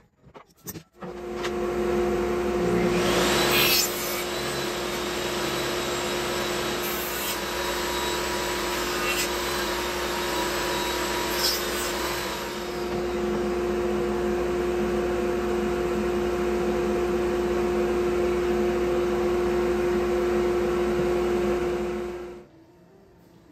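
Table saw fitted with a stacked dado blade set, starting about a second in and running steadily with a constant hum while a wooden door rail is fed through it to cut a groove.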